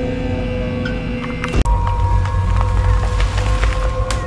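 A low, steady droning ambience with scattered crackles and clicks. It cuts out abruptly about one and a half seconds in and resumes with a different, deeper drone.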